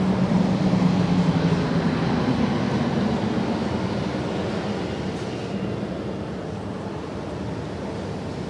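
Audience applause in a conference hall, slowly dying away.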